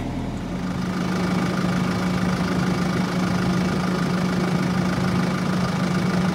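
Tractor diesel engine idling, a steady hum that holds one pitch and sets in about half a second in.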